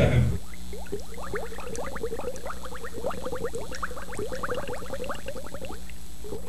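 Liquid bubbling and gurgling steadily: a quick, continuous run of short rising blips over a low hum.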